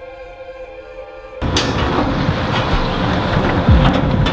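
Background electronic music, cut off about a third of the way in by a loud, steady rush of wind on the microphone with a few sharp knocks, a single steady tone carrying on beneath it.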